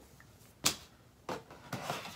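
A cardboard product box being handled: one sharp knock about two thirds of a second in, then a few softer taps and rustles of the cardboard flaps.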